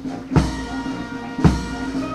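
Military march music: two bass drum strikes about a second apart under a held note.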